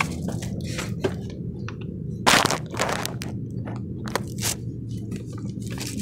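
Crunching and rustling as someone climbs into a truck cab, boots crackling on the paper floor mat, with a few sharp knocks; the loudest comes about two and a half seconds in. A steady low hum runs underneath.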